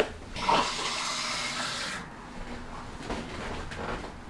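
Water running from a kitchen tap for about a second and a half, then stopping.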